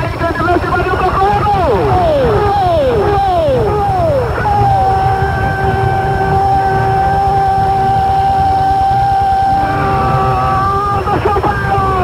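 Brazilian radio play-by-play announcer calling a goal: a few falling shouts, then one long held cry of 'gol' lasting about six seconds.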